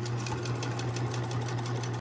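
Domestic electric sewing machine stitching a seam through layered cotton fabric and batting: a steady motor hum with rapid, even needle strokes.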